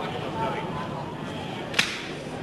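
A single sharp slap near the end, skin on skin as two wrestlers come together into a lock-up, over the steady background noise of the hall.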